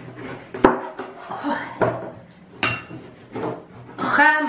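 A kitchen knife cutting through an orange and knocking down onto a cutting board: several sharp taps, the loudest a little over half a second in.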